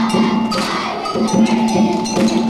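A choir of young children singing a song with accompaniment, with bell-like percussion marking the beat and some hand clapping along.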